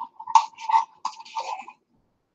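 Knife scraping tomato paste out of a small metal can: a run of short, quick scraping strokes over a steady ringing note, stopping shortly before the end.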